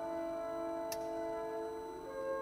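A symphony orchestra holding a soft, sustained chord of several steady notes, with a single sharp click about halfway through.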